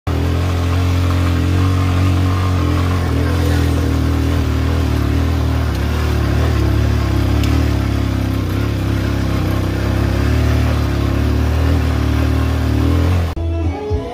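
A small motorcycle engine running at a steady speed, an even low drone. Near the end it cuts off abruptly and music begins.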